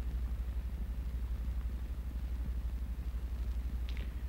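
Steady low hum with faint hiss from an old film soundtrack. Its level flutters quickly and evenly.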